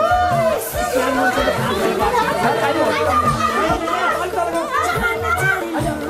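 A group of children chattering and calling out all at once, many voices overlapping, over background music with a steady low beat.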